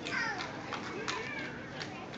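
Young children's voices chattering and calling out indistinctly, with high, wavering pitch, and a few light clicks in between.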